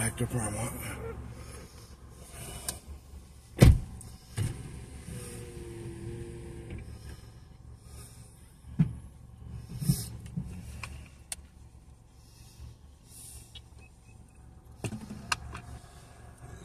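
Handling knocks and clicks inside a parked car's cabin: one sharp knock about four seconds in, then scattered lighter clicks, with a brief steady hum from about five to seven seconds.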